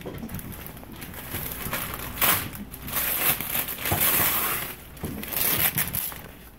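Christmas wrapping paper crinkling and crackling in irregular bursts as a wrapped present is handled and opened by hand, loudest about two seconds in and again in the middle of the stretch.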